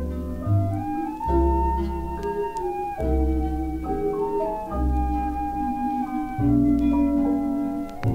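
Instrumental passage of a 1957 easy-listening vocal-jazz record played from vinyl. Sustained chords ring over a bass line that moves to a new note about every second and a half.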